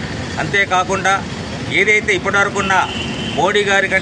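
A man speaking Telugu into reporters' microphones, in three stretches of talk with short pauses between them, over a steady background hum.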